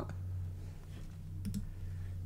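A few light clicks on a computer, clustered about one and a half seconds in, while trying to log in, over a steady low hum.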